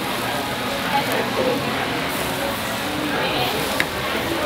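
Steady hiss of marinated beef pieces sizzling on a wire grill over charcoal, with a faint click near the end.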